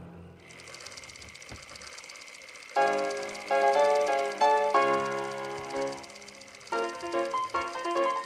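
A cartoon film projector starts running with a steady whir and fine rapid clatter. About three seconds in, music comes in over it in short, loud chords that break off and start again.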